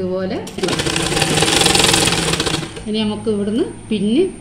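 Domestic sewing machine running a short burst of stitching: a rapid, even clatter that starts about half a second in and stops after about two seconds.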